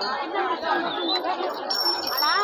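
Several people talking at once: overlapping chatter of a crowd, with no single voice standing out.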